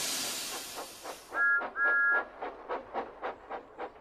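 Cartoon steam-engine sound effects: a hiss of steam that fades out, two short toots on a two-note whistle with the second one longer, then a quick, even chuffing, about five puffs a second.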